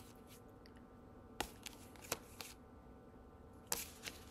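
Tarot cards being handled: a few short, soft clicks of the cards, the sharpest near the end, over quiet room tone.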